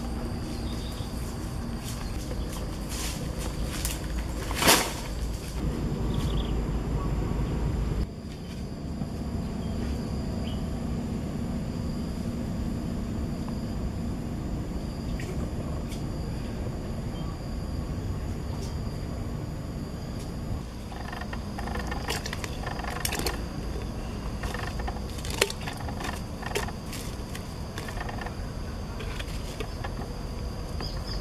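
Outdoor ambience with a steady high insect drone, a low rumble that stops abruptly about eight seconds in, and occasional knocks and snaps of dry branches being handled. The loudest is one sharp knock about five seconds in.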